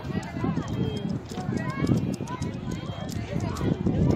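Children's voices calling and chattering some way off, too distant to make out words, with scattered light clicks and knocks.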